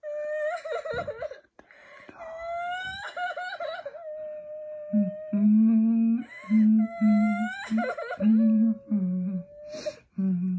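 A voice wailing in long, drawn-out sliding tones like exaggerated crying, joined from about halfway by lower humming in repeated stretches, with a short laugh near the end.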